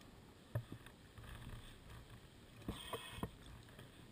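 Faint underwater sound of a scuba diver's exhaled bubbles rushing out in two swells, with a few soft knocks.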